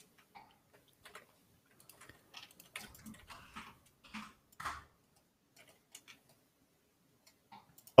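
Faint, irregular clicks and taps from computer mouse and keyboard use, picked up by the artists' desk microphones. They come most thickly in the middle of the stretch.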